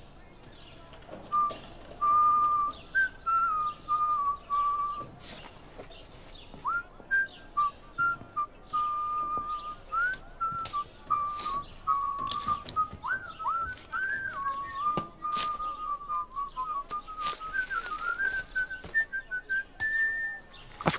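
A man whistling a slow, wandering tune in short phrases, sliding up into many of the notes and climbing higher near the end. A few faint knocks and clicks sound under it.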